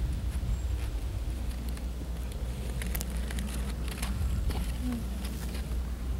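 Quiet outdoor background: a steady low rumble with faint rustles and scattered light clicks, one sharper click about three seconds in.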